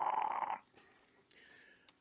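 A man's raspy, breathy exhale through an open mouth, a hoarse 'haaah' with a slight rattle, ending about half a second in.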